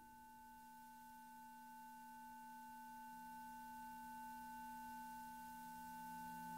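Faint electronic music: a drone of several steady, pure sine-like tones held together and slowly getting louder.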